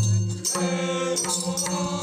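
Nepali folk music for a bhailo dance: madal hand drums beaten in a steady rhythm under chant-like group singing, which enters about half a second in.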